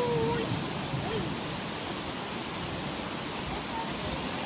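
Steady rushing noise of heavy rain falling through leaves, mixed with a flooded, muddy mountain river rushing below.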